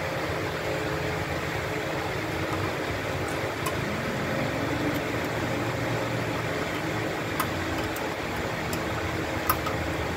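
Steady drone of a running machine, with a low hum, and a few faint light clicks in the second half.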